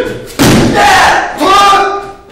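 Loud kiai shouts in a martial-arts throwing sequence: a long shout about half a second in and a shorter one near the end. The long shout starts with a sharp thud, typical of a body thrown onto the mat.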